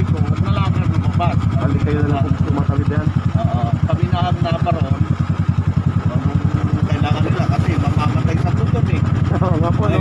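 Motorcycle engine idling steadily, a fast, even low pulsing under voices talking.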